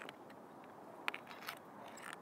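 Faint handling sounds of a USB cable being unplugged from a small power bank: two brief light clicks about a second and a second and a half in, over a low background hiss.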